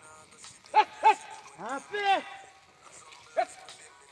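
A ploughman's short shouted calls driving a team of plough cattle: two quick calls about a second in, a longer rising-and-falling call a second later, and a brief one near the end.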